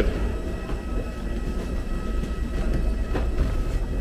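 Steady low mechanical rumble and hum of an airport jet bridge, with faint steady high tones above it and a single knock a little after three seconds in.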